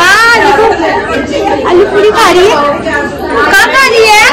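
Only speech: people chattering and talking over one another.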